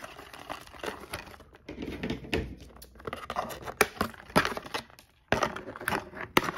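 Plastic packaging tray and cardboard box being handled as an action figure is worked out of its packaging: crinkling plastic with scattered sharp clicks and taps, pausing briefly a little after five seconds.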